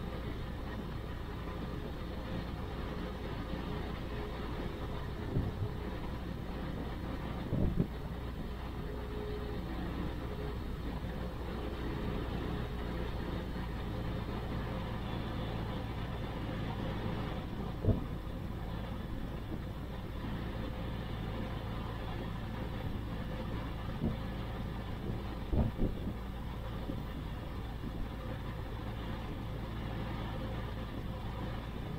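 Rotax flat-four aircraft engine idling steadily with the propeller turning, its twin Bing carburettors being balanced at idle. A few short sharp knocks come through now and then.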